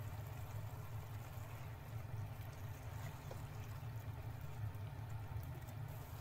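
Fresh madake bamboo shoots frying in hot sesame oil in a frying pan: a steady sizzle with small pops.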